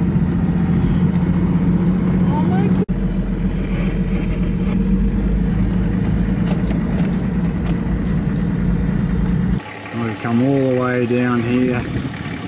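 Steady engine and road drone of a 60 Series Toyota LandCruiser driving on a snowy, icy mountain road, heard from inside the cabin, with a brief dropout about three seconds in. About two seconds before the end it cuts off suddenly and gives way to a man speaking outdoors.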